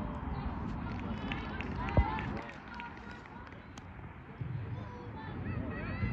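Distant shouts and calls from players on a football pitch over a low rumbling background, with one sharp, loud call about two seconds in. The background rumble drops away for a couple of seconds in the middle.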